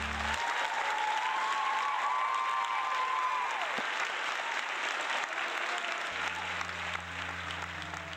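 Theatre audience applauding at the end of a musical number, with one long, high whoop held over the clapping for the first few seconds. Low, steady music notes come in near the end.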